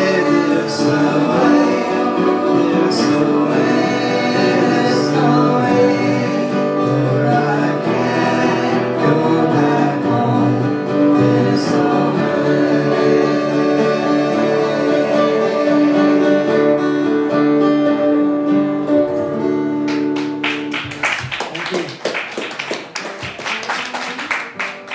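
Live acoustic music: an acoustic guitar with several voices singing together. The song ends about twenty seconds in and a round of hand clapping follows.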